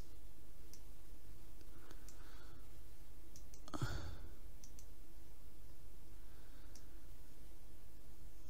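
A few faint computer mouse clicks over a steady low hum of room tone, with one sigh about four seconds in.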